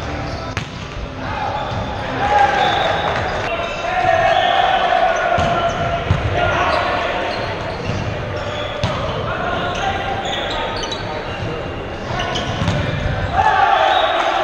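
Volleyball players shouting calls to each other during a rally, echoing in a large gymnasium, with sharp smacks of the ball being hit now and then. The loudest shouts come about two seconds in and near the end.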